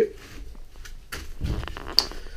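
Brief low rustling and handling noise from someone moving about, ending in one sharp click.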